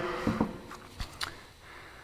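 Faint handling noise: a few light knocks and clicks as a gloved hand shifts and lifts a bank of aluminium carburetors on a wooden bench.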